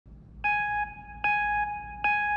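Electronic beep tone: the same high note sounds twice, less than a second apart, each starting sharply and holding before cutting off, with a third beep starting at the very end. A faint low hum runs underneath.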